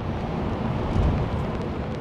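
Wind blowing on an outdoor microphone: a steady rushing rumble with no distinct events, swelling briefly about a second in.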